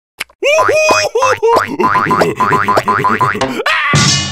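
Cartoon slapstick sound effects: a rapid run of springy boing notes that bend in pitch, several a second, over comic music, ending in a sudden crash that rings and fades away.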